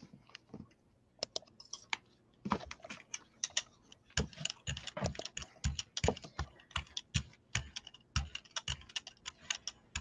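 A brayer rolling acrylic paint out across a gel printing plate makes a quick, irregular run of small sticky clicks and crackles. It starts with a few scattered clicks and grows dense from about four seconds in.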